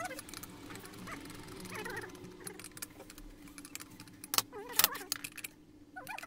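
Metal hand tools and chainsaw parts clinking and rattling on a steel workbench as a chainsaw crankcase is handled, with two sharp metallic clinks, the loudest sounds, about four and a half seconds in.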